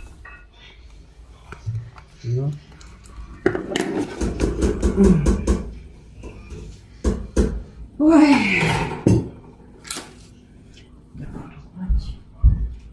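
Crockery and spoons clinking on a kitchen table: a scatter of short, sharp clinks and knocks of bowls, mugs and cutlery being handled.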